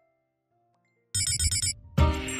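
Near silence, then about a second in a quick burst of electronic beeping, five rapid high-pitched pulses in about half a second, like a digital alarm clock or phone ringer.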